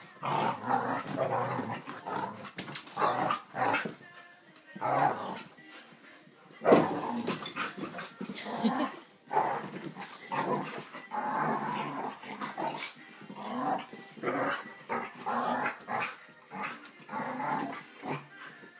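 A Doberman and a Border Collie play-fighting, growling and barking in irregular bursts, with one sharp, loud burst about seven seconds in.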